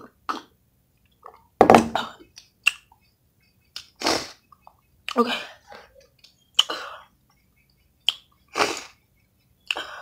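A boy's short breathy gasps and coughs, coming every second or so, as his mouth burns from very spicy ramen noodles.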